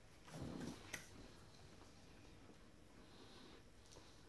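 Near silence: room tone, with a brief soft low sound about half a second in and a faint click near one second.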